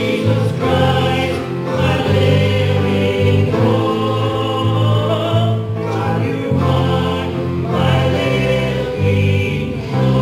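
Live church worship band performing a song: several voices singing together over piano and guitars.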